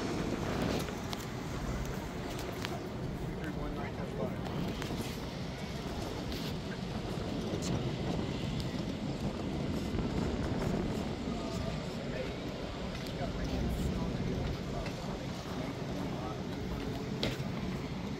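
Indistinct chatter of several people outdoors over a steady low rumble, with no clear words or sudden sounds.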